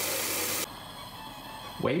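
Tap water running into a metal pot in a sink, cutting off suddenly about two-thirds of a second in, leaving quiet room tone.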